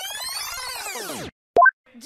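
An electronic sound effect: a pitched sweep that arches and then bends steeply down, fading out a little over a second in. After a brief silence comes a short rising 'bloop' pop.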